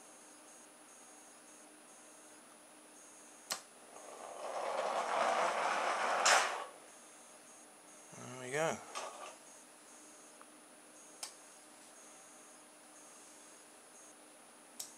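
A click, then a rubber band powered car on CD wheels rolling away across a wooden floor for about two seconds, building up and ending in a sharp knock.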